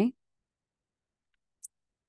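Dead silence, broken by one short, faint click about three-quarters of the way through.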